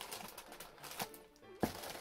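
Quiet background music, with faint handling noise from a large paper instruction booklet being moved. There is a light knock about one and a half seconds in.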